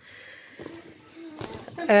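A push-button automatic umbrella with a transparent plastic canopy being opened: faint rustling, then one sharp snap about one and a half seconds in as it springs open. A short voice follows at the end.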